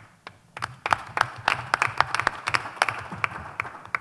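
Applause from a small group of people: separate hand claps, heard distinctly, starting about half a second in.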